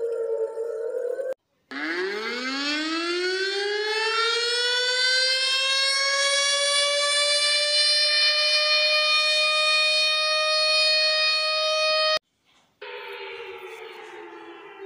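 Warning siren winding up from a low pitch to a steady high tone, held for several seconds, then cut off abruptly. Just before it, the falling tail of another siren stops short, and about a second after it ends a further, lower siren tone begins.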